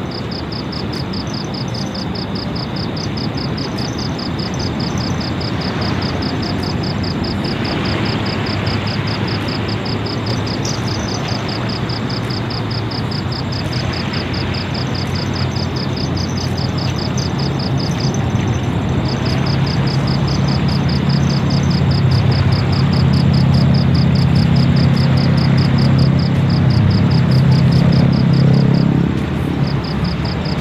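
A low engine drone slowly grows louder and cuts off near the end. Insects chirp in a fast, even pulse over a broad rushing noise throughout.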